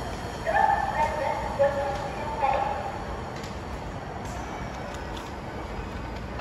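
A short electronic chime of several held notes sounds over steady station background noise about half a second in, lasting a couple of seconds, as the departure of a waiting local train is signalled. A few light clicks follow near the middle.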